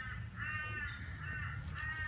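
A bird calling three times in drawn-out, crow-like calls; the middle call is the shortest.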